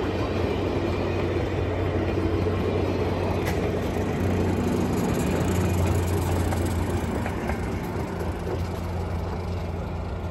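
Passenger train rolling past over the rails, its cars followed by a trailing diesel locomotive with a steady low engine drone; the sound eases off toward the end as the train moves away.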